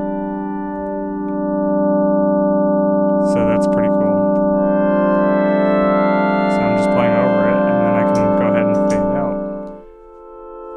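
Novation Peak synthesizer pad chord held as a steady drone by the Empress Echosystem's freeze mode, with further synth notes played over it from about four seconds in, some wavering in pitch. The held chord stops suddenly near the end.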